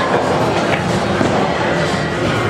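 Steady din of a busy snooker hall: overlapping background voices and general room noise, with no single clear event.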